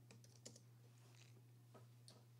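Faint computer-keyboard typing: a quick cluster of keystrokes in the first half second, then a couple more spaced out, over a steady low electrical hum.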